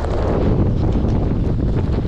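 Strong wind buffeting an action camera's microphone during a snowboard descent, a loud rumble mixed with the hiss of the board sliding over snow.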